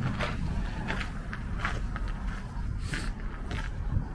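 Footsteps on outdoor paving, about two a second, over a low steady background rumble.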